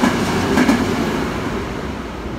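A limited express train running through the station at speed, its wheels clacking over the rail joints. The sound fades as the last cars go by.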